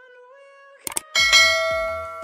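Two quick mouse-click sound effects just before a second in, followed by a bright bell ding that rings out and slowly fades: the click-and-notification-bell effect of a subscribe-button animation. Faint background music holds steady notes underneath.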